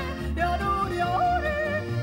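Swiss folk song: a woman yodels, her voice leaping between held notes, over accordion, double bass and acoustic guitar.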